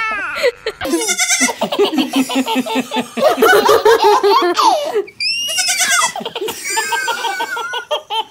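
A baby laughing in repeated bursts, alternating with a young goat bleating.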